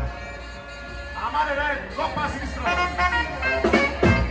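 Live festival band music with a man's voice singing over it. It is quieter for the first second, then the voice comes in, and the full band with drum hits comes in loud just before the end.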